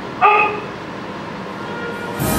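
A voice gives one short, loud shouted syllable about a quarter second in, then steady background hiss.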